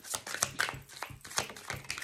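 A deck of tarot cards being shuffled by hand: a quick, irregular run of papery slaps and rustles as the cards riffle against each other.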